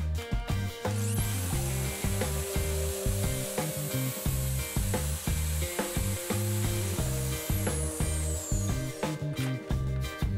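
A power drill with a pocket-hole bit boring into a pine board through a pocket-hole jig. It starts about a second in, runs steadily, and winds down near the end with a falling whine. Background music with a steady beat plays underneath.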